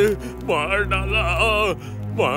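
Background film score: sustained low notes under a wavering, sung vocal line that rises and falls with a strong vibrato.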